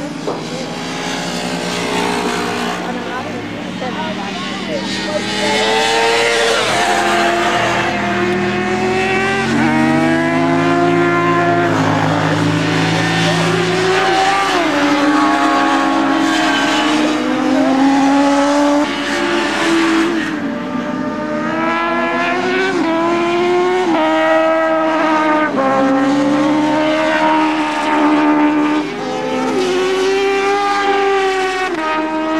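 Several racing sportbike engines running at once, their notes climbing and then dropping back at each gear change as the bikes accelerate around the track.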